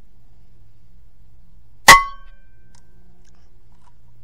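A single shot from an AGT Vulcan 3 .22 PCP air rifle with a 700 mm barrel: one sharp report about two seconds in, followed by a brief ring.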